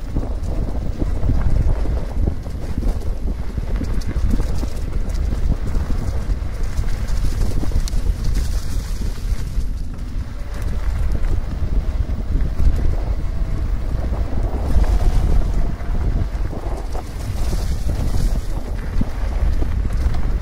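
Steady wind buffeting the microphone of a camera on a fast-moving e-mountain bike, over the rumble of its tyres rolling on a dirt and gravel trail.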